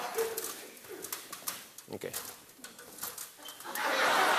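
Low studio room sound with scattered small clicks and rustles, then a studio audience breaking into applause near the end.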